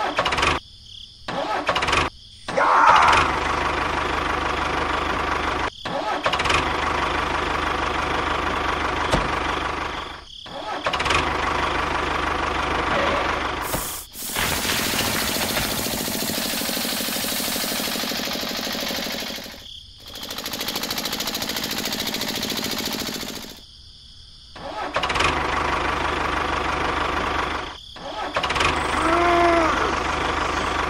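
Tractor engine running steadily, in stretches of a few seconds broken by about eight abrupt cuts. The middle stretch carries more hiss.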